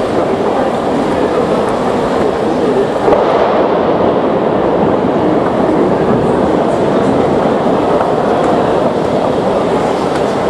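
Heavy rain with large drops pouring down, a loud, steady rush of noise that gets a little louder about three seconds in.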